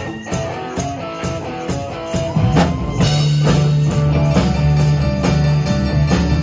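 Live band playing a country-rock song: electric guitar over a steady drum-kit beat, getting louder about two and a half seconds in as a strong bass line comes in.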